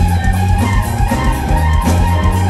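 Live funk band playing loudly with a heavy bass line, a steady drum beat and keyboards, as heard from the middle of the audience.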